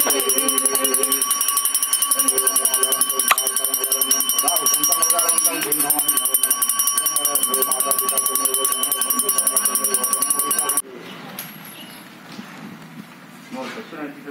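Small brass pooja handbell rung rapidly and without pause during aarti, with voices chanting under it. Both cut off abruptly about eleven seconds in, leaving quieter talk.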